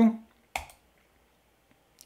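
A single sharp computer mouse click about half a second in, clicking the debugger's Continue button, followed near the end by a much fainter tick.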